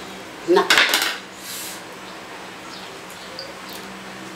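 A knife and cutlery clattering and scraping against a metal serving tray in a short loud cluster about half a second in, followed by a few faint clicks.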